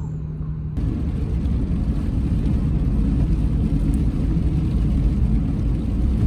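Car driving along a wet road, heard from inside the cabin: a steady low road and engine rumble. It starts abruptly under a second in, after a brief steady low hum.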